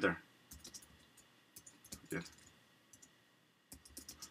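Light, irregular clicks of typing on a computer keyboard, a few keystrokes at a time with short gaps between.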